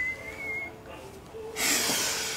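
A woman laughing softly: a high, wavering squeak of suppressed laughter in the first moments, then a breathy laughing exhale near the end.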